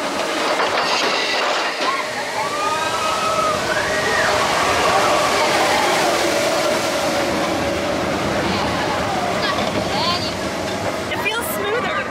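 Expedition Everest roller coaster train running along its track, a steady loud rumble and rush of air, with wavering high squeals over it in the first half.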